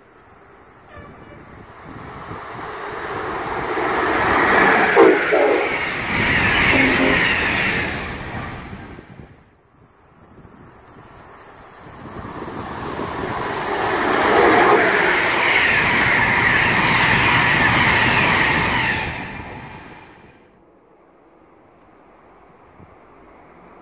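Electric passenger trains passing through the station at speed: two passes, each a rush of wheel-on-rail noise that builds over several seconds and then fades. The second pass holds loud for about five seconds before falling away.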